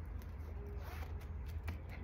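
Metal zipper on the front of a cropped shirt being zipped up, a quiet short zipping sound.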